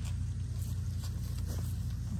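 Pepper plant leaves and stems rustling, with a few light snaps, as a hand moves through the bush, over a steady low rumble.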